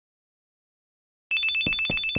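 Mobile phone ringtone: a rapid electronic two-tone trill, about ten pulses a second, starting just over a second in.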